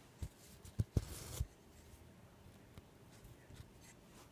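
Hand cross-stitching on 18-count Aida cloth: a few soft taps as the needle is worked through the fabric, and about a second in a short scratchy rasp as the floss is drawn through.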